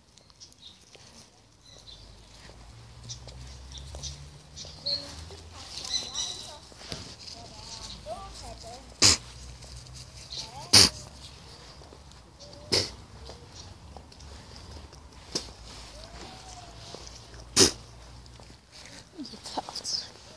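Faint background voices over a low rumble, broken by five sharp knocks spread through the second half.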